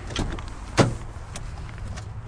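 Car door being opened: one sharp, loud latch click a little under a second in, with a couple of lighter clicks and knocks around it.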